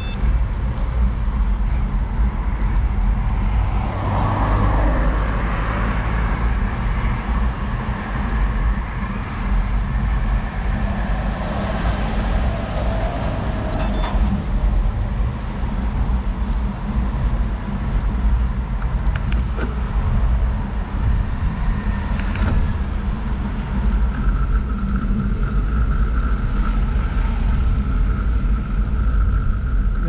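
Wind buffeting the microphone of a bike-mounted camera while riding, a heavy steady low rumble, with road traffic passing now and then. A steady whine joins in over the last few seconds.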